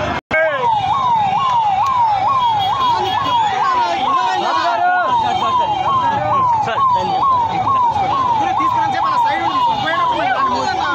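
Electronic vehicle siren sounding a fast repeating rise-and-fall yelp, about two and a half sweeps a second, over the noise of a crowd. The sound drops out for a moment just after the start.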